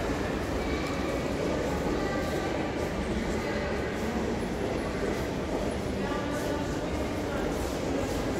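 Steady low rumble of a large indoor public hall with indistinct voices of people talking in the distance, coming and going.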